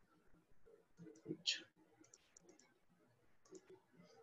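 A few faint computer mouse clicks, with a brief louder hiss about a second and a half in.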